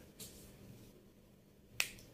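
Near-quiet pause with one short, sharp click near the end.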